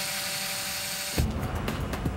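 Small electric motor spinning a water-filled bowl: a steady whine over hiss that stops suddenly about a second in. Background music with a beat follows.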